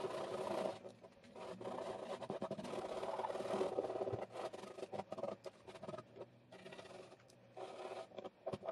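The end of a paintbrush handle scraping and rubbing over the painted plastic of a Nerf blaster magazine, breaking the paint surface and lifting latex masking and paint flakes. The rubbing comes in several stretches of a second or more, with a faint squeak in it and small clicks between.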